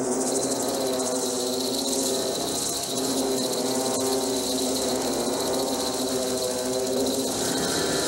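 Film soundtrack: a sustained chord of several held pitches under a high, rapidly pulsing insect-like trill, the trill cutting out about seven seconds in.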